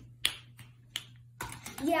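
A few sharp finger snaps, spaced out across the first second, then a child's voice starts talking near the end.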